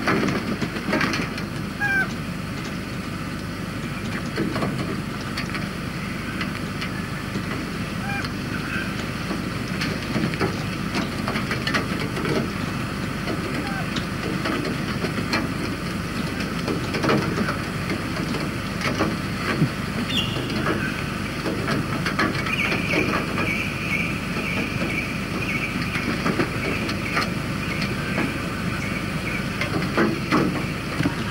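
Birds calling with short chirps, then from about two-thirds through a sustained, wavering high call. Scattered light taps and clicks sit over a steady background hiss.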